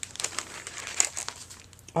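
A clear plastic sleeve crinkling and crackling in irregular bursts as it is pulled off a handmade card.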